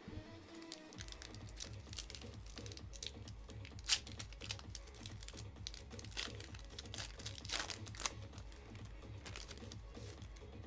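Crinkling and tearing of a foil Pokémon booster-pack wrapper being handled and opened, a string of short sharp crackles with a louder one about four seconds in, over quiet background music with a low steady pulse.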